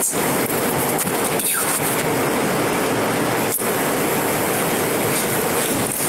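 A steady, loud rushing noise, even across high and low pitches, with a brief dropout about three and a half seconds in.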